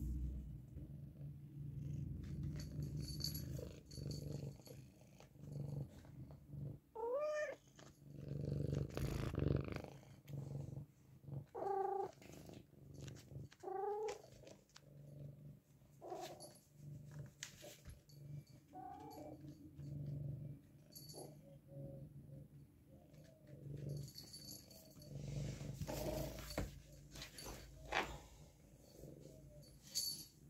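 Domestic cat purring close to the microphone, the purr swelling and fading with its breathing. It gives a few short meows, about seven, twelve, fourteen and nineteen seconds in, and there are scattered light knocks.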